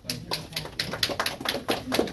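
Scattered applause from a few people: sharp, irregular hand claps, several a second.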